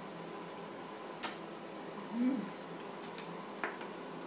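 Three light clicks of a plastic baby spoon against a bowl, with a short rising-and-falling hum from a voice about halfway through.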